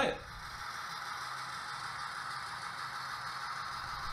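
HO-scale model train running steadily along the track, a continuous whirring rattle of the locomotive's motor and wheels on the rails.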